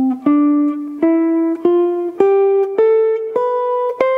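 Archtop jazz guitar playing an ascending C major scale one single note at a time, about one note every half second, each note ringing until the next. The scale climbs step by step and reaches the octave C near the end.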